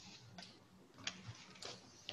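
Three faint, sharp clicks spaced about half a second apart over a faint low hum.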